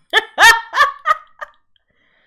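A woman laughing: a high-pitched burst of about five quick pulses that trails off about a second and a half in.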